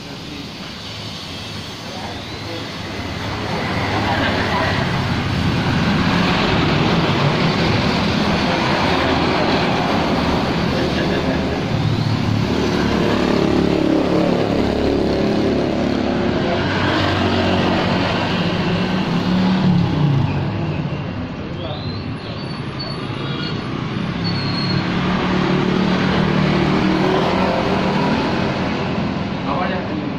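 Road traffic: cars and motorcycles passing close by one after another, each engine swelling and fading as it goes past, with a short lull about two-thirds of the way through.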